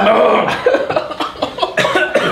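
Men coughing hard: a short voiced sound, then a rapid, ragged string of coughs. They are choking on the burn of an extremely hot sauce at the back of the throat.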